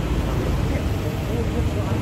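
A minivan's engine idling close by with a steady low rumble, under faint chatter from people around it.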